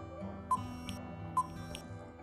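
Quiz countdown timer sound effect: two short beeps about a second apart, over soft background music.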